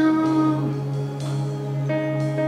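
Slow worship music: steady held chords, with a voice gliding up into a long sung note at the start.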